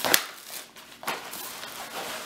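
Handling noise as fabric slip-on shoes are gathered up and stacked: a sharp tap at the very start, then a low, steady rustling.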